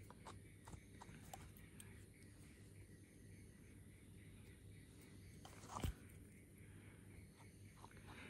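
Near silence: faint rustling and ticking of a small slicker brush being worked through a long-haired rabbit's belly fur, with one short knock near six seconds in.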